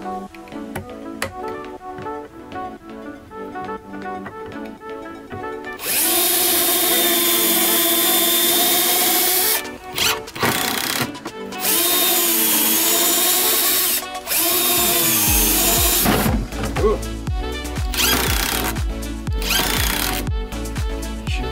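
Background music, then about six seconds in a compact Bosch cordless driver starts up. It runs in several bursts of a few seconds each with a motor whine, driving screws to fix a cabinet gas-strut bracket to its frame.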